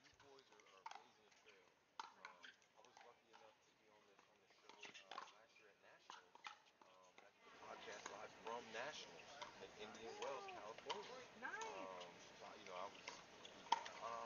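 Faint, irregular pops of pickleball paddles hitting the plastic ball in a soft rally, about one a second. From about halfway through, faint distant voices come in behind them.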